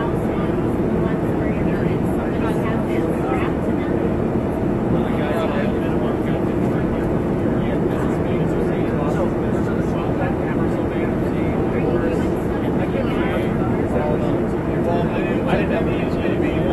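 Steady engine and airflow noise inside an airliner's passenger cabin in flight, with indistinct passenger conversation under it.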